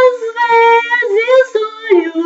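A woman singing solo: a long held note carries over from just before, then comes a series of shorter sung notes that slide between pitches.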